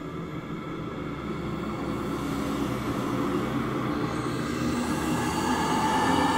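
A rumbling, droning soundscape that swells steadily louder, with held high tones coming in near the end.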